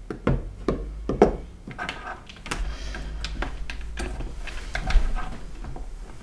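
Handling noise: a loose Seagate Barracuda hard drive set down on a wooden desk and hands moving parts inside an open metal PC case, giving a series of light knocks and clicks over a low handling rumble, the loudest knock near the end.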